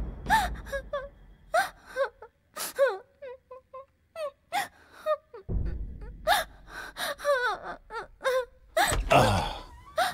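A young woman crying: short broken sobs and gasping breaths with wavering pitch, and a run of quick little whimpers about three seconds in.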